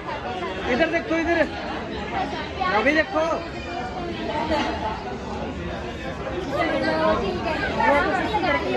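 Several people talking over one another: lively, overlapping group chatter with no single clear voice.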